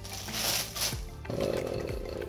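Clear plastic bag around a wine bottle crinkling and rustling as the bottle is lifted out of a cardboard box's molded pulp tray. Bursts of hissy crinkle come first, then a rougher scraping-like rustle.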